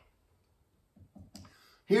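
A pause in a man's sermon: nearly quiet for about a second, then a few faint short clicks, before his voice comes back in at the very end.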